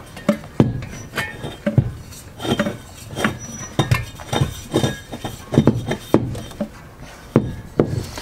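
A run of irregular metallic clinks and knocks as a screw-on regulator is turned back onto an aluminium cooking-gas bottle and the bottle shifts in its locker.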